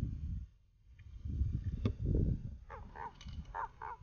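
A bird calling several times in quick succession in the second half, with short crow-like caws, over low handling and water noise. There is a single sharp click a little before the calls.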